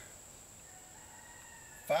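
Quiet outdoor background: a steady high-pitched insect drone, with a faint drawn-out tonal call lasting about a second in the middle.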